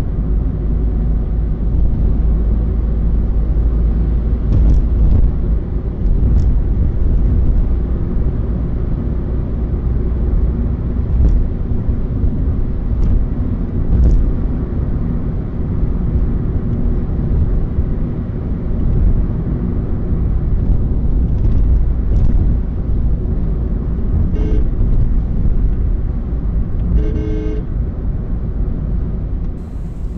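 Steady road and engine noise of a car driving at highway speed, heard from inside the cabin with a heavy low rumble. A vehicle horn sounds twice near the end, a short toot and then a slightly longer one.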